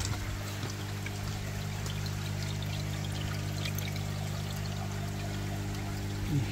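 Water pouring and splashing steadily into a koi tank, over a steady low electrical hum.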